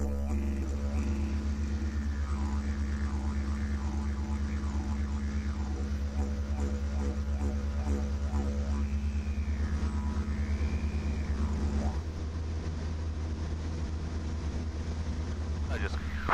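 Didgeridoo music playing, a low steady drone with sweeping, wavering overtones and a pulsing rhythm, heard over the Piper PA-38 Tomahawk's engine drone in the cockpit. The didgeridoo drops out about twelve seconds in, leaving the engine drone.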